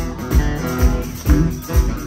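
Live band playing an instrumental passage: strummed acoustic guitar and electric guitar over bass and drums, with a steady kick-drum beat a little over two a second.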